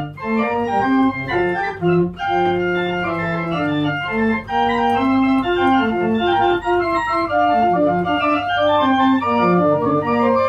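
Two-manual house pipe organ played on its flue pipes: chords of held notes moving together, changing every half second or so, over a steady low tone.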